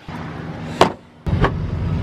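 A car door latch clicks as the door is opened, and then a steady low engine drone comes in from about a third of the way through. The drone is typical of idling semi-trucks at a rest stop.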